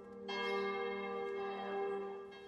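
Sustained, bell-like ringing tones holding steady. A second, brighter ringing layer comes in about a third of a second in.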